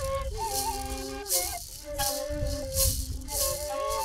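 Traditional music: a maraca shaken in a steady beat under a sustained flute melody that steps between notes.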